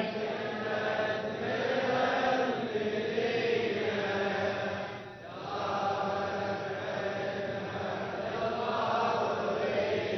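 A crowd of men chanting a mourning refrain together in unison, answering the reciter in a call-and-response lament, with a short break for breath about halfway through.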